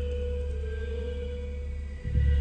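Ambient background music: one steady held tone over a deep low drone, with faint higher tones above.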